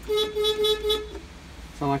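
Kioti 5310 compact tractor's horn sounding once: a single steady toot about a second long, small and thin, like a little clown horn.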